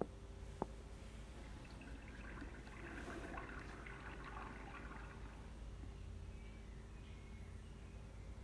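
Two light clicks right at the start, then a few seconds of soft crackly rustling as a plush toy is handled and set down into a cardboard box, over a low steady room hum.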